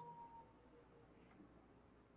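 Near silence: faint room tone, with the last of a voice trailing off in the first half second.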